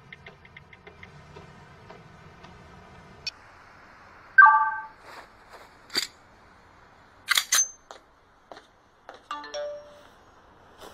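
A quiet, steadily ticking music score, then a mobile phone's short electronic beeps and sharp clicks: a single beep about halfway, clicks, and a quick run of beeps falling in pitch near the end.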